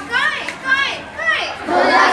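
Children's voices calling out in short, high calls that rise and fall, three or four of them about half a second apart.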